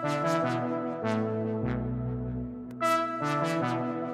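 Synth melody playing back: a Nexus synth preset layered with Waves Element 2's 'Distant Horns' brass preset, a short phrase of held notes over a changing low note that starts over about three seconds in.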